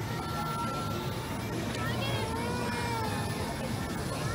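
Amusement-park ambience: distant voices and children's calls over a steady low hum.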